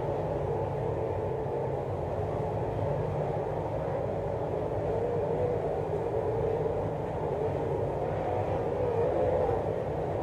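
Several dirt late model race cars' V8 engines running at racing speed as the field laps the track, heard as a steady drone whose pitch wavers a little up and down.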